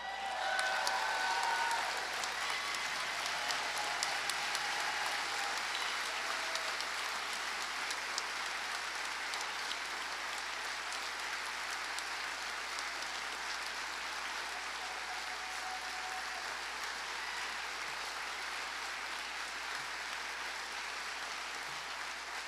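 Audience applauding steadily, a little louder in the first couple of seconds and then holding at an even level.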